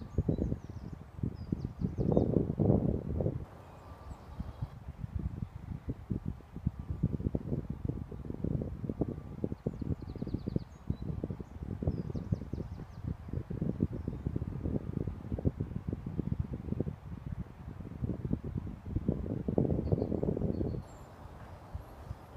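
Wind gusting across the microphone and through the trees, a rough low rumble that swells and eases, with a few faint bird chirps.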